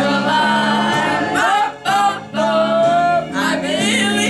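Karaoke: a backing track with guitar and a voice singing long held notes into a microphone, with two brief breaks between phrases around the middle.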